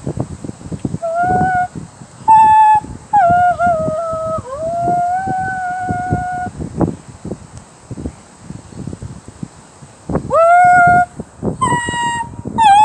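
A high voice holding long, wordless notes one after another with short breaks, some sliding down in pitch, the longest held steady for about two seconds. After a pause filled with scattered knocks and rustles, another long note swells in near the end.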